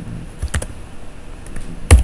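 Computer keyboard being typed on: a few scattered keystrokes, with one much louder key strike near the end.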